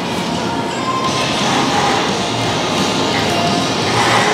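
Close-up chewing of a crunchy salad with raw carrots and greens, over background music.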